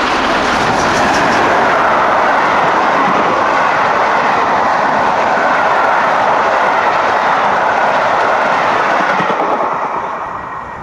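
BR A1 class 4-6-2 steam locomotive 60163 Tornado and its train of coaches passing close by at speed, a loud, continuous rush and rumble of wheels on the rails that dies away near the end as the last coach goes by.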